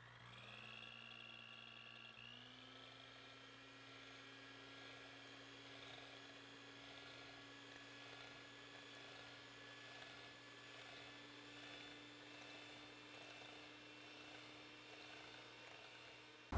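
Faint electric hand mixer whipping cream with yogurt in a glass bowl: the motor whine rises in pitch as it spins up, steps up again about two seconds in, then runs steadily.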